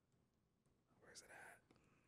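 Near silence, broken about a second in by one brief, faint whispered mutter.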